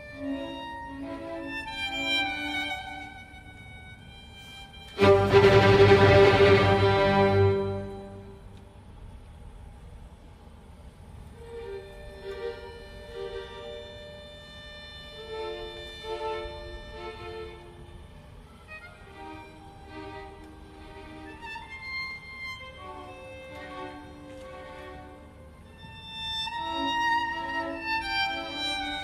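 Solo violin playing with a string orchestra. About five seconds in the full ensemble comes in with a sudden loud chord held for about three seconds, after which the solo violin goes on softly over quiet string accompaniment, swelling again near the end.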